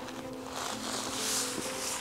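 Soft background music of held, steady notes, with a faint crinkle of a clear plastic sleeve being slid off a wooden staff about halfway through.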